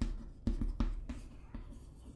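Chalk writing on a chalkboard: a series of short, irregular taps and scratches as letters are written.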